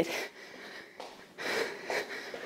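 A woman breathing hard from exercise: a few soft, breathy breaths, the longest near the end.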